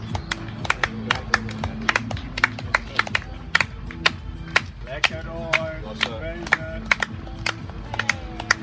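Hand clapping by a couple of people, a few irregular claps a second, the sharp claps the loudest sounds, over steady background music.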